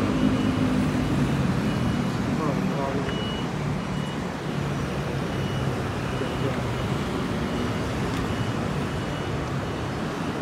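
Steady city street traffic noise with a low engine drone that fades over the first two seconds. A faint high beep repeats about once a second.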